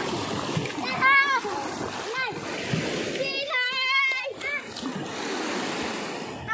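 Children splashing in shallow seawater, with high-pitched children's shouts and squeals over it, the longest a held cry around the middle.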